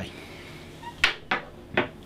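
Three short, sharp knocks in quick succession starting about a second in: small hard objects being put down and picked up on a desk.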